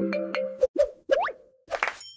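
Playful intro jingle: a held chord fades out, followed by cartoon pop and rising boing sound effects and a few quick clicks.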